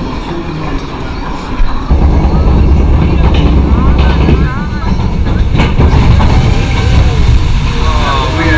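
Jurassic Park ride boat moving off along its water flume: a heavy, low rumble that starts suddenly about two seconds in and runs on steadily.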